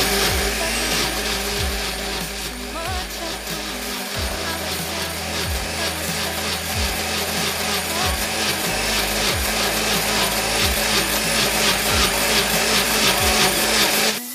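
Countertop blender running steadily, puréeing a thick cooked tomato, onion and garlic mixture in its glass jug.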